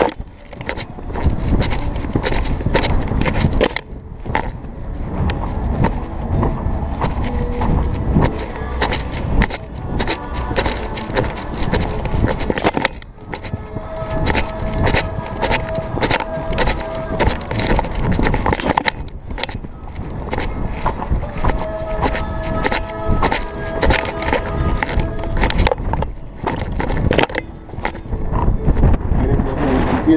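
Horse being ridden across grass, heard from a camera on the rider: a continuous jostling rumble full of repeated knocks from hoofbeats and rattling tack.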